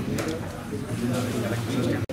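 Indistinct voices of people talking in a room, with a man's low voice held near the end.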